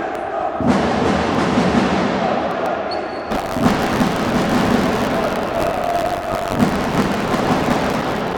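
Loud, continuous sports-hall ambience during a stoppage in play: music and a mix of crowd voices filling the arena.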